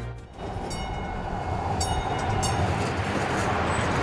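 Light rail train passing, a dense rumble that builds steadily louder, with a few faint high clicks over it.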